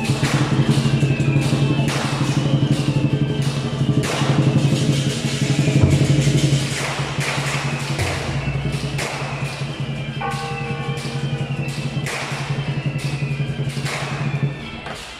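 Lion dance percussion: a large drum beaten in a fast, continuous roll, with cymbal crashes recurring throughout.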